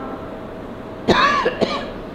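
A man coughing into a microphone about a second in: one sharp cough followed by a shorter second one.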